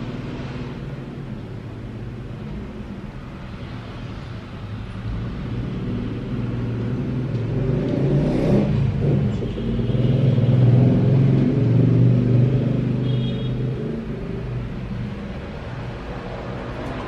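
A low, steady motor rumble with a hum, growing louder about halfway through and easing off near the end.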